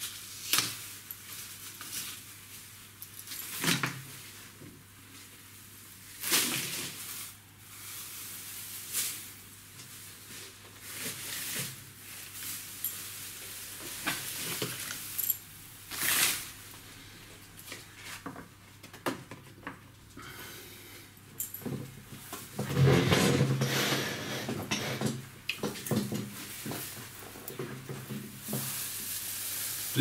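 Metallic foil tinsel garland rustling and crinkling as it is handled, in short irregular bursts, with a longer, louder stretch of rustling a little past two-thirds of the way through.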